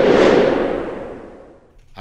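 Whoosh sound effect accompanying a news logo transition: a rush of noise that swells, peaks just after the start, and fades away over about a second and a half.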